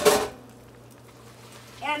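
A brief noisy clatter and splash from a cooking pot as cooked macaroni is drained, cut short about a third of a second in, followed by a quiet stretch of kitchen room tone.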